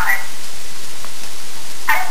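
Steady hiss of recording noise filling the gap between spoken words, with a faint click about a second in.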